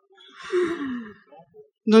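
A person sighing: a breathy exhalation whose voice slides down in pitch, about half a second in. Speech starts near the end.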